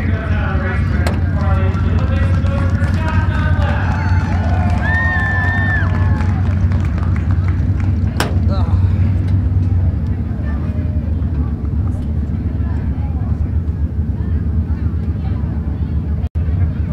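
Indistinct voices talking over a steady low engine rumble of dirt-track race cars, with a single sharp knock about eight seconds in.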